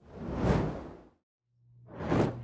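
A whoosh transition sound effect that swells up and fades away over about a second. After a brief gap, a second whoosh starts rising near the end.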